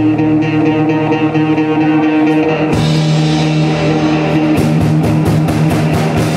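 Live indie rock band playing an instrumental passage on guitars and drum kit, with no singing. The guitar chord changes about halfway through, and the drums open up with repeated cymbal hits in the last second and a half.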